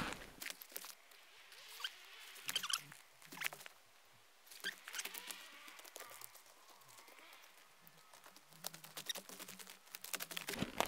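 Faint, intermittent rustling and small twig snaps in dry conifer needles and sticks on the forest floor, as someone moves about and picks mushrooms by hand.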